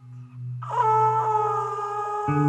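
A plastic tube trumpet blowing one long, steady, horn-like note that enters about half a second in and wavers briefly at its start. Under it a low steady drone fades away.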